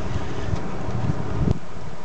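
Wind buffeting the microphone as a steady low rumble, with a single sharp knock about a second and a half in.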